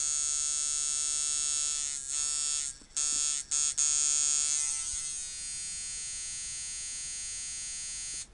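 Ciferri Walker coil tattoo machine buzzing steadily at 5 volts, about 146 cycles a second. It cuts out briefly a few times between about two and four seconds in, runs a little quieter from about five seconds, and stops near the end.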